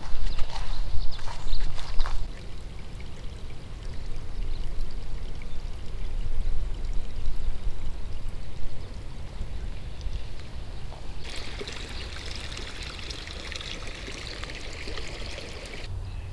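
A few footsteps in the first two seconds, then steady running, trickling water with low wind rumble on the microphone; a brighter hiss joins at about eleven seconds.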